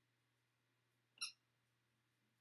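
A single short, high squeak about a second in, from a dog biting its brand-new squeaky ball; otherwise near silence.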